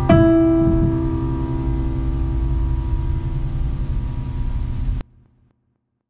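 Piano keyboard's closing chord of a slow song, struck once and left to ring, fading slowly until it cuts off abruptly about five seconds in.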